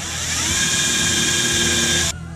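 Power drill spinning up and boring into the plywood lid of a possum box: a whine that rises over the first half second, then holds steady under load.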